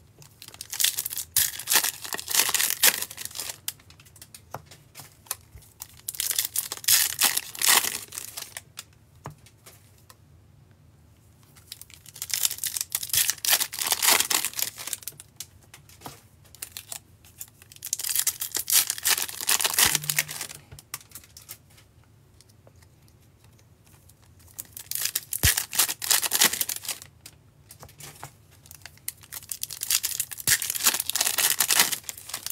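2019 Topps Update baseball card packs, with foil wrappers, being torn open and crinkled by hand one after another. The tearing and crinkling comes in bursts of two to three seconds, about every six seconds, with quiet between.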